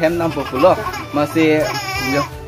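A baby crying with a brief high wail in the second half, over a man talking.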